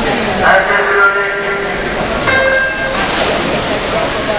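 Electronic swimming start signal: a steady pitched beep for a little over a second, then a second, shorter tone about two seconds in, over the voices of the crowd.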